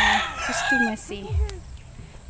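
A rooster crowing, mixed with a woman's short cough in the first second.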